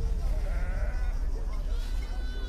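Livestock bleating: several wavering calls over a steady low background noise.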